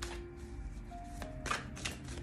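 A deck of tarot cards shuffled by hand, with a few crisp slaps of the cards, the sharpest about one and a half seconds in.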